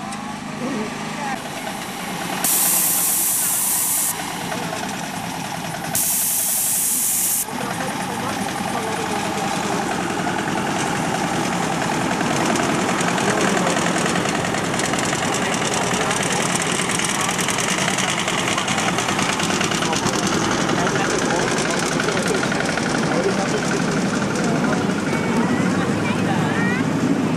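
Passengers' voices over the steady running noise of a miniature railway train carrying riders. Near the start there are two bursts of loud hiss, each about a second and a half long.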